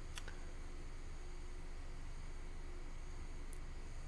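Computer mouse clicking: two faint clicks just after the start and one more near the end, over a steady low hum of room noise.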